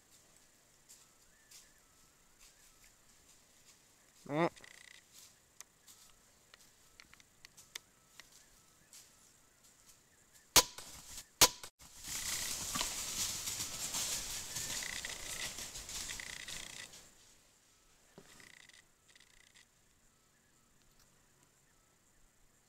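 A short mouth-bleat 'meh' about four seconds in, then a bow shot at a buck: two sharp cracks less than a second apart, the loudest sounds here. They are followed by about five seconds of the hit deer crashing away through dry leaves, which fades out.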